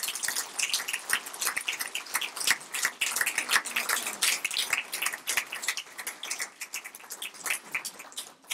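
Applause from a seated audience of a few dozen: many hands clapping, thinning out toward the end.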